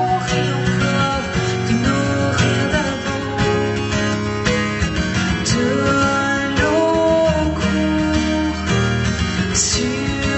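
A woman singing a French song while strumming an acoustic guitar, played live.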